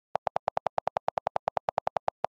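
iPad on-screen keyboard clicks from the delete key held down, repeating about ten times a second as a line of text is erased.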